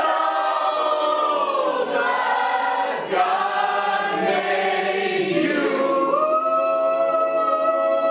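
A group of voices singing a birthday song together, ending on long held notes over the last two seconds.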